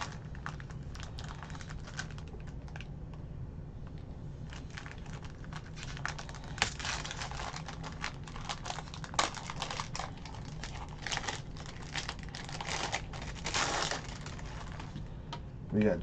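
Plastic wrapper crinkling and tearing as a trading-card box-topper pack is opened by hand, in irregular crackly clusters that pick up a few seconds in.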